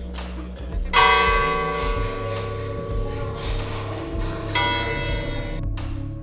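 Church bell tolling slowly for a funeral: two strikes about three and a half seconds apart, each ringing on and fading.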